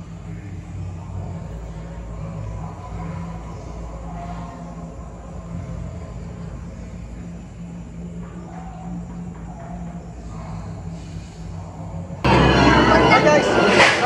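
Intro soundtrack: a steady low drone with faint voice-like sounds underneath, then about twelve seconds in a sudden, much louder burst of harsh, noisy sound with shrill, shaky voice-like tones.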